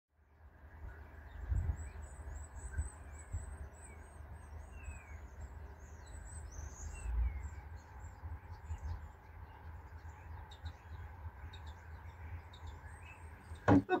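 Small birds chirping and twittering over a steady low rumble that swells a couple of times.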